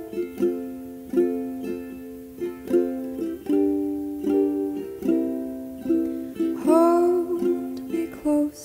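Ukulele playing a slow song in picked notes and chords, with a brief sung note about seven seconds in.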